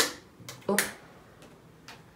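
Four short, sharp clicks or snaps: three in the first second and one near the end, with a brief 'oh' from a woman's voice alongside the third.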